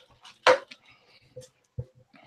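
A single sharp click close to the microphone about half a second in, followed by two faint low thumps.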